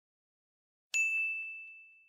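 A single bright ding about a second in, one clear bell-like tone that rings out and fades over about a second. It comes out of dead silence, like a sound effect added in editing.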